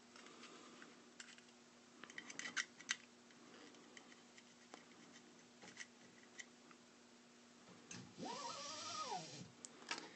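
Faint small metallic clicks and taps of a hex key working the fan screws on a 3D printer's toolhead, busiest about two to three seconds in, over a low steady hum. Near the end there is a brief pitched, voice-like sound that rises and then falls.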